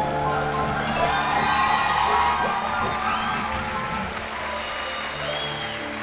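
A live band's final chord rings out and fades while the audience applauds.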